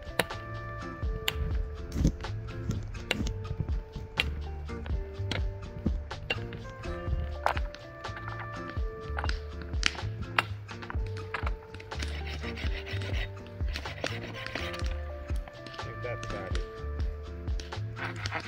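Background music with a steady beat and a repeating bass line.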